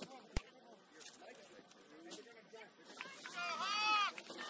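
Faint, distant shouts and calls of rugby players across an open field, growing louder in the last second. A single sharp knock sounds about half a second in.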